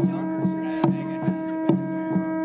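Conch shell trumpet blown in one long, steady held note, over a drum beaten steadily about two and a half strokes a second.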